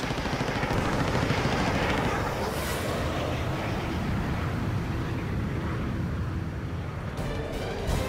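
Sound-designed air-combat effects: rapid aircraft cannon fire over a heavy rush of aircraft engine noise, with a dramatic music score underneath. The noise eases off toward the end.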